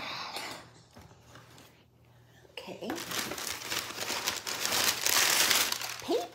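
Brown kraft packing paper being pulled out of a cardboard box and crumpled: a brief rustle, a pause, then crinkling and rustling that begins about two and a half seconds in and grows louder.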